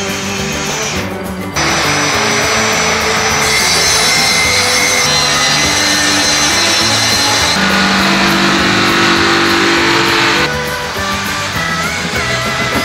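Power saw running and cutting through a board for about nine seconds, starting abruptly a second and a half in and stopping shortly before the end, over background rock music.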